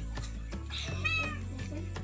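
A leopard cat gives one short meow about a second in, over steady background music.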